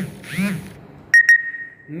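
A man's voice briefly at the start, then two sharp clicks in quick succession about a second in, the loudest sound, followed by a faint steady high tone that fades out before the end.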